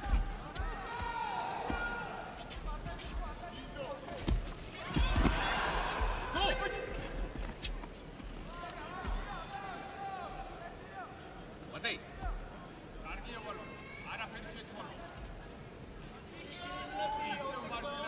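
Judo bout on tatami mats: shouting from the crowd and coaches over repeated thuds and slaps of feet and bodies on the mats. A throw attempt about four to five seconds in brings a loud thud and the loudest burst of shouting.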